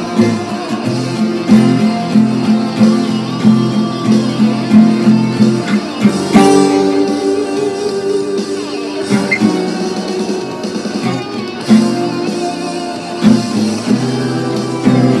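Acoustic guitar picked, a run of plucked notes and chords, with a stronger chord struck about six seconds in that rings on.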